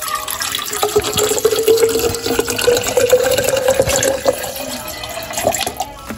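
Water poured from a plastic bottle into a stainless steel Stanley tumbler: a steady splashing stream whose tone rises slowly as the cup fills.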